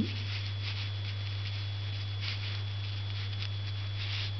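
Faint soft strokes of a Chinese painting brush on paper, a few scattered through, over a steady low hum.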